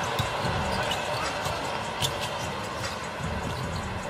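Basketball game sound on a hardwood court: a ball being dribbled and a few sharp short sounds of play, over a steady haze of arena background noise with faint voices.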